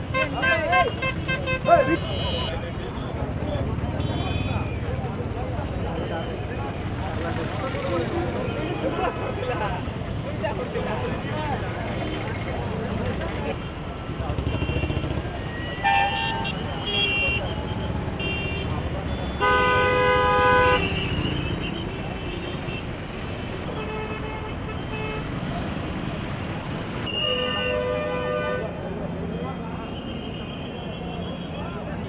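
Vehicle horns honking in congested street traffic over a crowd's chatter: several short toots and, about twenty seconds in, a louder horn held for a second or so, with another near the end.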